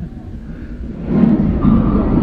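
Animatronic dinosaur's recorded roar from the exhibit's loudspeaker: a loud, rough roar with a deep rumble, starting about a second in.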